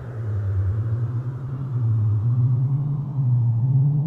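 Hardstyle electronic music build-up: a sustained low synth bass drone with no drums, slowly rising in pitch and growing louder.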